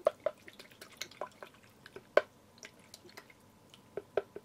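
Toothbrush being rinsed in a bowl of water: irregular small splashes and drips, the loudest about two seconds in.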